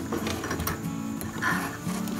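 Singer domestic sewing machine running, sewing an overlock stitch along a fabric edge, heard under background music.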